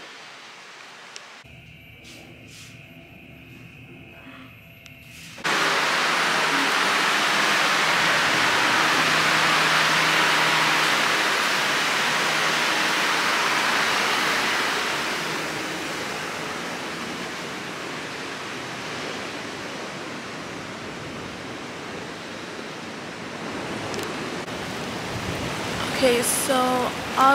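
Steady rushing hiss of water outdoors by a pool and the sea, cutting in suddenly about five seconds in, loudest for the next ten seconds and then a little softer; before it, only faint room tone.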